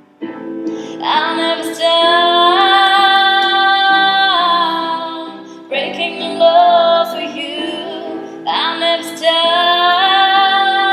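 A woman singing long, drawn-out notes in three phrases over sustained electric keyboard chords, the first phrase starting about a second in after a brief lull.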